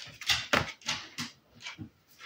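Oracle cards being drawn off a deck and laid down on a table: a quick, uneven series of short paper rustles and slaps, about half a dozen in two seconds.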